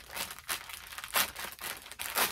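Packaging crinkling in a series of irregular rustles as a pack of sports bras is handled, with a sharper crackle about a second in.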